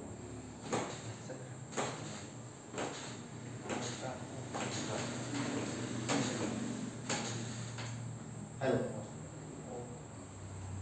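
Hands pressing rhythmically on a patient's lower back on a padded treatment table: a series of brief soft knocks and creaks, about one a second, over a steady low hum.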